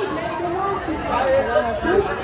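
Overlapping conversation: several people talking at once.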